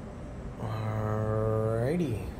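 A man's voice holding one long, low, steady note for about a second and a half, starting about half a second in and lifting upward in pitch just before it stops.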